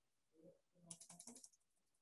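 Near silence broken by faint computer keyboard keystrokes, a quick run of about half a dozen clicks about a second in.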